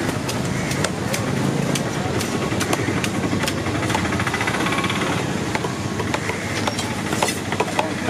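Busy fish-market din: a steady rumble of engines and distant voices, with scattered sharp knocks of cleavers on wooden chopping blocks and a brief buzzing rattle near the middle.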